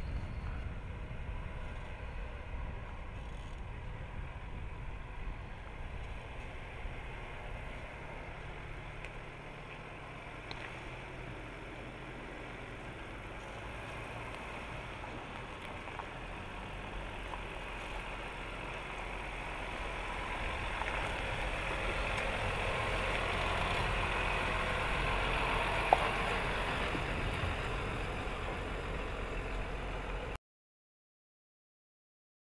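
Jeep Grand Cherokee driving slowly over rock, its engine running low and steady, growing louder as it draws near in the second half, with one sharp click near the end.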